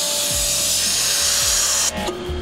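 Pressure washer spraying through a 15-degree nozzle into a block of ballistics gel at close range: a loud, steady hiss of high-pressure water that stops suddenly near the end.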